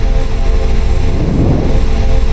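Cinematic logo-intro sound: a deep, loud rumbling drone under sustained tones.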